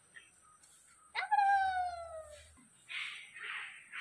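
A puppy gives one long, high whine that starts sharply about a second in and slides steadily down in pitch for over a second. A few short rustling noises follow near the end.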